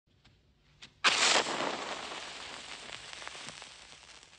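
A sudden loud burst of noise about a second in, trailing off into a fading hiss with scattered faint crackles.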